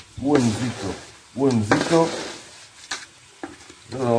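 A man's voice speaking two short phrases, followed by a quieter stretch with two sharp clicks near the end.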